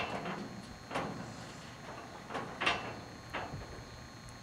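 A few short, sharp sounds about a second apart as a person drinks a thick blended food mixture from a plastic water bottle and lowers it; the sharpest comes right at the start.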